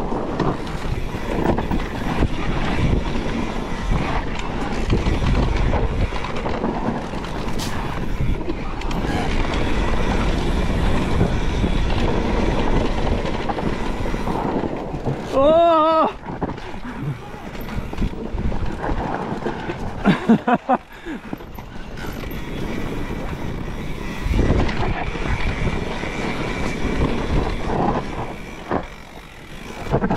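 Mountain bike rolling down a dusty dirt singletrack: tyre rumble over the ground, the bike rattling, and wind buffeting the camera's microphone. About halfway through comes a short, wavering pitched sound, and a few sharp knocks follow a few seconds later.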